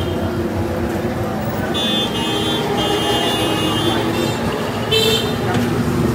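Street traffic with vehicle horns sounding, one held for over a second about two seconds in and a sharper blast near the end, over a steady background of traffic and voices.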